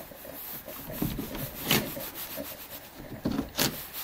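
Irregular rubbing and scuffing against wood, with a few sharper knocks, the strongest about two thirds of a second and a second and a half from the end.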